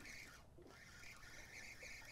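Near silence: faint steady background noise between sentences.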